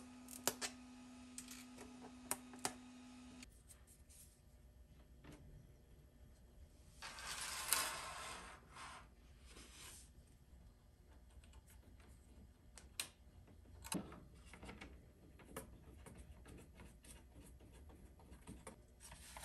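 Faint clicks and taps of small 3D-printed plastic parts being handled and pressed into a laser-cut MDF tray, with a short rustling swell about seven seconds in. A low hum stops about three and a half seconds in.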